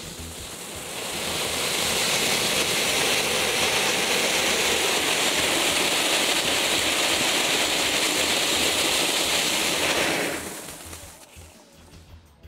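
Flugent Fountain Green ground-fountain firework spraying sparks with a steady rushing hiss. It builds over the first second or two, holds, and dies away near the end as the fountain burns out.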